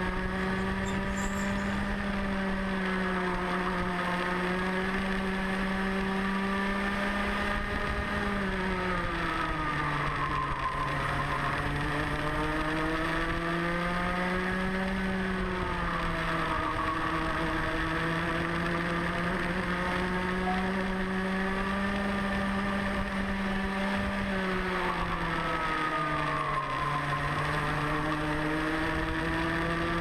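Rotax Mini Max 125cc two-stroke kart engine heard onboard at racing speed, its pitch mostly high and steady. It dips twice, about eight and about twenty-four seconds in, as the kart slows for corners, then climbs back as it accelerates out.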